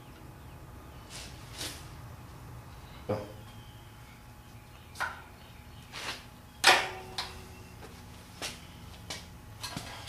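Scattered light metal clicks and clinks of a long screwdriver working down the distributor drive gear bore of a VW Type 1 engine case, centering the drive gear shims. The loudest clink, about two-thirds of the way through, rings briefly.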